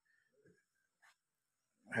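Near silence: room tone with two tiny faint sounds, then a man's voice starting again near the end.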